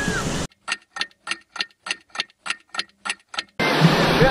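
An edited-in clock-ticking sound effect: about eleven sharp, evenly spaced ticks, roughly three and a half a second, over dead silence. Beach surf noise is heard briefly before the ticking and comes back near the end.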